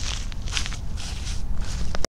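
Footsteps on dry grass close to the microphone, a few crisp steps a second, over a low wind rumble on the microphone; a sharp click at the very end.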